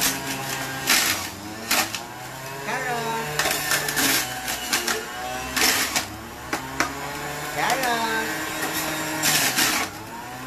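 Electric centrifugal juicer running with a steady motor hum, grinding carrot pieces as they are pushed down the feed chute, with several loud bursts of shredding noise.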